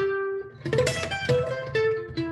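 Acoustic guitar played solo, picked single notes: one note rings at the start, then a run of new notes follows quickly from about half a second in.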